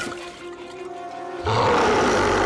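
Dramatic score with held tones, then a werewolf's loud, rough roar bursting in about one and a half seconds in and holding to the end.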